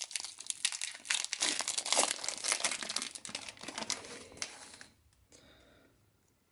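Shiny booster-pack wrapper crinkling and tearing as it is ripped open by hand: a dense run of crackles that dies away about five seconds in.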